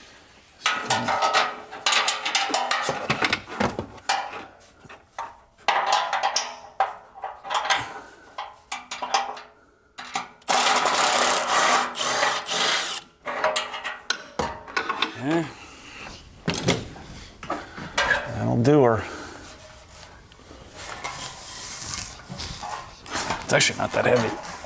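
Cordless ratchet running in several short bursts on exhaust fasteners under a car, the longest burst about two seconds near the middle, with a few brief rises and falls in motor pitch later on.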